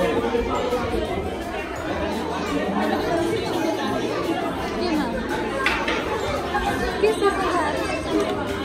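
Indistinct chatter of several adults and small children talking over one another in a large room, with no clear words. There is one brief high-pitched sound a little before six seconds in.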